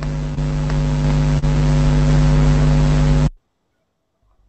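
Steady, loud, buzzy hum over a hiss, coming through a video-call participant's open microphone as background noise. It cuts off suddenly a little past three seconds in, leaving dead silence.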